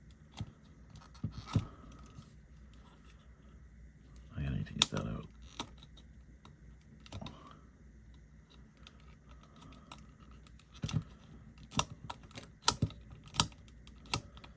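Scattered sharp clicks and taps of hard plastic as fingers work at the Playmates Pizza Tossin' Michelangelo figure's spring-loaded pizza launcher, trying to free pizza discs jammed in it from overloading. The clicks come closer together in the last few seconds.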